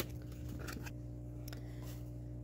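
Cut cardboard pieces and scissors being handled and set down on a cardboard sheet: a few faint light taps and rustles over a steady low hum.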